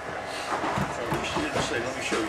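Indistinct talk from several men, low in level, with a few light handling clicks.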